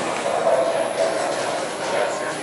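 Bowling alley din: a steady rumble of rolling bowling balls and pinsetting machinery, with a faint murmur of voices.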